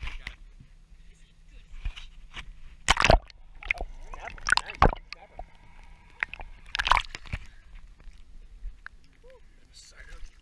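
Sea water sloshing and splashing around a camera dipped below the surface beside a small boat, with three loud splashes about three, five and seven seconds in.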